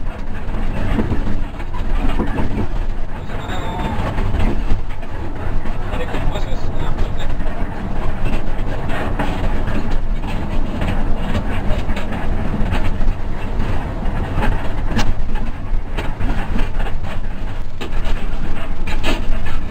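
Hino RK8 260 bus running on the road, heard from inside the cab. The diesel engine and tyre noise make a steady low rumble, with frequent clicks and rattles from the body and dashboard.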